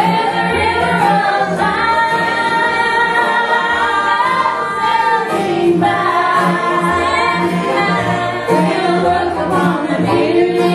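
A gospel song sung live: a woman's lead voice with other voices joining in harmony, over a steady, evenly repeating bass line.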